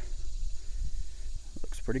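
Low, uneven outdoor rumble with a faint hiss and no distinct events; a man's voice comes in near the end.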